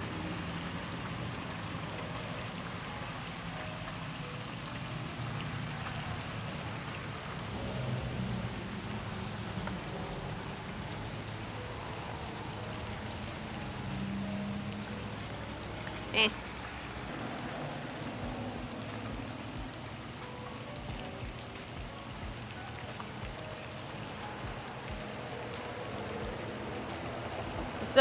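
Steady splashing of a pond fountain, an even water hiss throughout, with one sharp click about sixteen seconds in.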